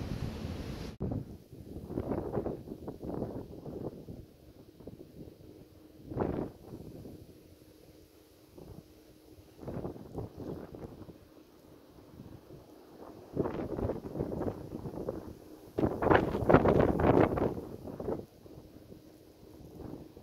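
Wind buffeting the microphone in irregular gusts, the strongest near the end, over a faint steady hum.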